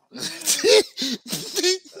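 Laughter: about three breathy bursts with short voiced catches, like a cough-laugh.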